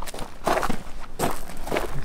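Footsteps on gravel, about four steps.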